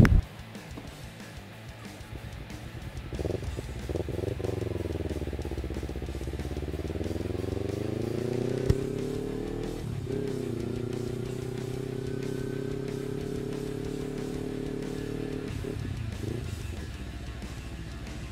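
Kawasaki Ninja motorcycle engine pulling away: its pitch rises steadily for about five seconds, drops with an upshift about ten seconds in, then holds steady while cruising. Background music with guitar plays underneath, and a short sharp click comes shortly before the shift.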